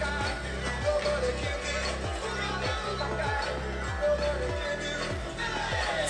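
Music with a steady kick-drum beat about twice a second and a heavy bass line, played through a small Dunder Mifflin wireless speaker turned up as loud as it gets.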